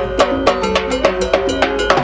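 Live mambo band playing: a fast, steady cowbell and timbales rhythm with rapid strikes, over the band's sustained pitched parts.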